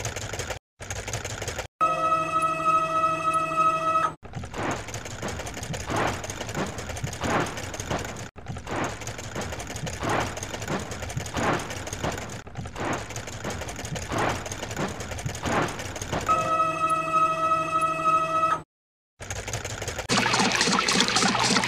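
Cartoon car-wash machinery sound effects. A steady mechanical buzz plays as the machinery moves in. Then a spinning scrubbing brush swishes in a steady rhythm for about twelve seconds, and the buzz comes back before a short silence.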